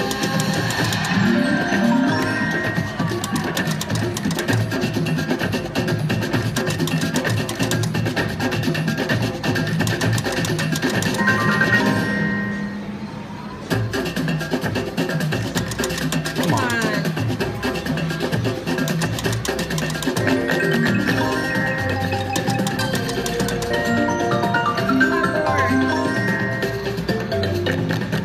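Kilimanjaro slot machine playing its free-spin bonus music, a continuous mallet-percussion tune with drums, while the reels spin. The music briefly drops away about halfway through, then starts again.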